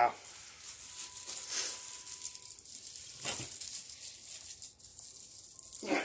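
Faint rattling and rustling of goods and their packaging being handled.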